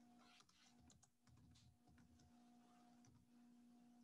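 Faint typing on a computer keyboard: scattered, irregular keystroke clicks over a low steady hum.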